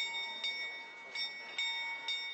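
Small bell ringing with repeated strikes, about two a second, each strike ringing on into the next. It is the striking bell of the Prague astronomical clock sounding during its hourly show.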